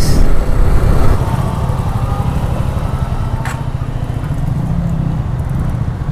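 Motorcycle engine running at low road speed, mixed with steady wind rumble on the microphone. The noise drops a little about a second in, and there is a single click a little past halfway.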